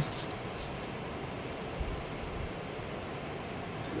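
Steady outdoor background noise with a low rumble, and a faint high chirp repeating about every two-thirds of a second.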